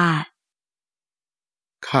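Speech only: a voice reciting in Thai finishes a phrase, then comes about a second and a half of dead silence, and a lower voice starts speaking just before the end.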